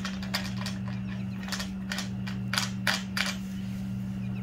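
A series of small, irregular metal clicks and taps as bolts and nuts are fitted into an L-shaped aluminium bracket on an IronRidge XR100 solar racking rail. A steady low hum runs underneath.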